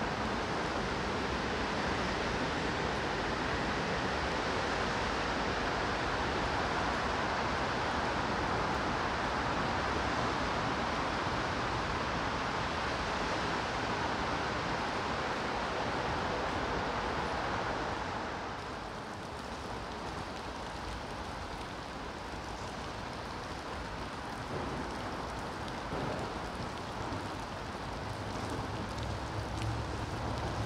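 Steady rain falling on wet paving, a continuous hiss that drops a little in level about two-thirds of the way through. A low hum joins near the end.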